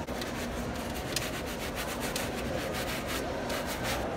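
A sneaker being scrubbed with a brush and foaming cleaner: a fast run of repeated rubbing strokes.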